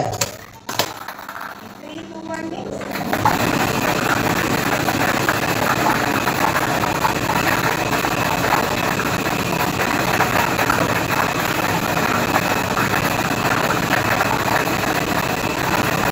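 Air-mix lottery draw machine starting up about three seconds in: its blower and dozens of plastic balls rattling steadily against the clear acrylic drum in a dense clatter. Before that, a couple of sharp clicks from the pneumatic ball-release gate.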